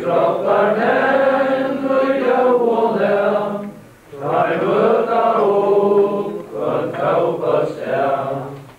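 A group of people singing together, in long held phrases with a brief pause about four seconds in and another shortly before the end.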